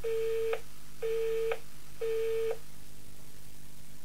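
Telephone busy tone after a recorded voicemail ends, signalling the line has hung up: three steady beeps, each about half a second long and one a second apart.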